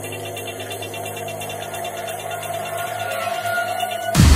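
Electronic drum and bass music in a build-up: a layered, squashed-sounding synth bed that grows steadily louder, with one tone edging upward in pitch near the end, just before the drop.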